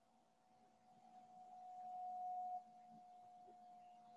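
A faint, steady tone that swells, then drops back suddenly about two and a half seconds in and carries on more quietly.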